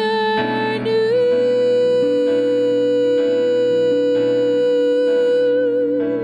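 A woman singing one long held note over keyboard and guitar accompaniment; the note slides up a step about a second in and breaks into vibrato near the end.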